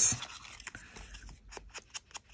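Small ink pad dabbed and rubbed along the edges of a paper card: a run of light, irregular taps with faint scraping.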